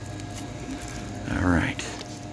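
Plastic DVD cases in shrink-wrap being picked up and handled, with faint clicks and crinkles, over a steady store hum. A short voice sound, a murmur, comes about a second and a half in.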